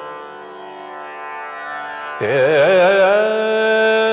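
Tanpura drone sounding alone, then about two seconds in a man's voice enters loudly, singing a wavering, ornamented phrase of a Hindustani morning raga that settles into a long held note over the drone.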